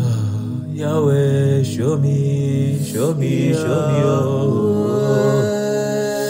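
Slow soaking worship music: a sustained keyboard pad holding steady chords under a wordless, gliding, chant-like vocal line.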